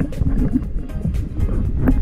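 Water churning and sloshing around a GoPro held at and under the surface, loud and low, over background music. The water sound cuts off abruptly at the end.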